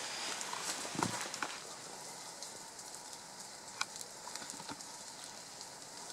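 Steady rain hissing on forest foliage, with a few sharp ticks scattered through it.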